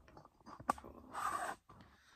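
Faint handling noises: a sharp click about two-thirds of a second in, then a short soft rustle.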